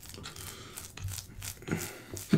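Fingers squishing into and pulling apart a pan of sticky stretchy cheese, a run of irregular wet crackles and tearing sounds.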